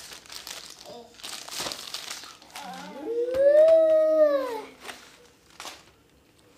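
Plastic wrapping crinkling as it is pulled off a YouTube Silver Play Button plaque. About three seconds in comes one long high call that rises and then falls.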